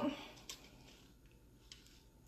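AR-style rifle being handled, giving a faint click about half a second in and a softer tick near the end; otherwise near quiet.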